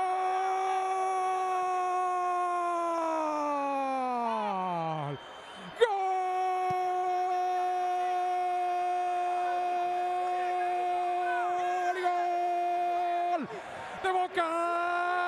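A Spanish-language football commentator's long goal cry, "gol", held on one high note for about five seconds and sliding down as his breath runs out. After a quick breath he takes it up again and holds it for about seven seconds more.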